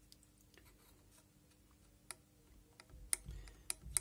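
Light, sharp clicks and low knocks from the metal levers of a 1978 Cadillac Eldorado windshield wiper motor being handled by hand. The clicks come in the last two seconds, several in quick succession.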